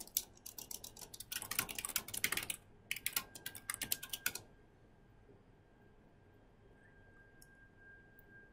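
Computer keyboard typing, a rapid run of keystrokes that stops about four and a half seconds in. A faint steady high tone lingers after.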